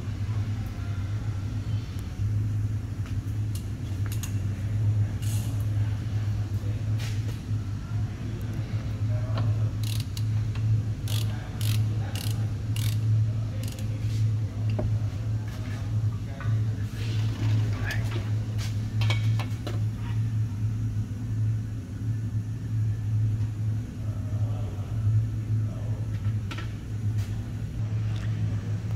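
Car service workshop under a lifted car: a steady low hum, with scattered sharp clicks and clinks of hand tools and parts as a mechanic works at an access opening in the car's undertray.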